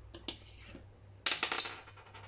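A small die rolled across a tabletop: a few faint taps, then a quick clatter of clicks about a second and a half in as it bounces and settles.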